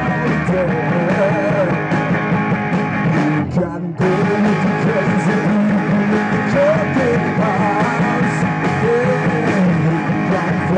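A rock band playing live: distorted electric guitars and a drum kit. Around three and a half seconds in the sound briefly goes dull and thin, losing its top end, then cuts back in abruptly.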